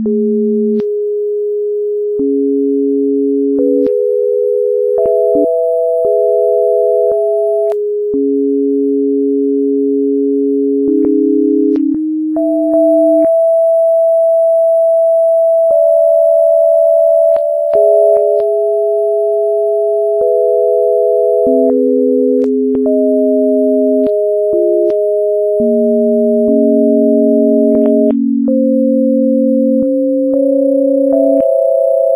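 Electronically generated pure sine tones, one or two sounding at once, each held for one to a few seconds before jumping abruptly to another low-to-middle pitch, with a faint click at each change.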